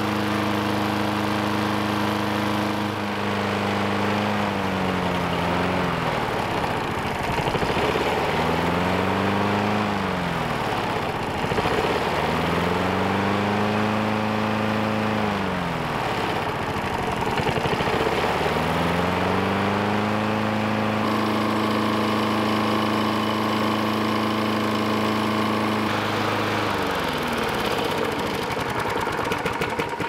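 Lawn mower's small single-cylinder engine running on gasoline vapor drawn through a hose from a bubbling fuel container. Its speed sags and picks back up several times as the vapor/air mix is set at the intake, then holds steady before slowing down near the end.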